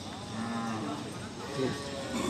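A cow lowing faintly, one steady low call, amid market voices.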